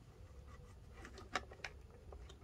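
Two faint, short plastic clicks a third of a second apart as the hard plastic dust collection box of an Erbauer ERO400 random orbital sander is handled against the sander's dust port while being fitted.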